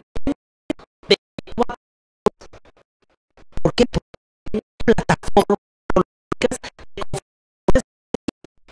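A woman's voice speaking Spanish, chopped into short stuttering fragments with dead silence between them: the audio stream is dropping out over and over.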